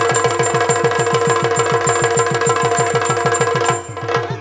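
Yakshagana percussion: chande and maddale drums playing a fast, even run of strokes, about nine a second, with small hand cymbals ticking and a steady drone underneath. The drumming cuts off suddenly near the end.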